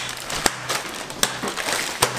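Paper and plastic wrapping rustling and crinkling as bundles of raw lamb skewers are unwrapped by hand, with a couple of sharp clicks.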